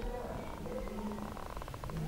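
A quiet pause between spoken phrases: faint low background noise with a weak hum.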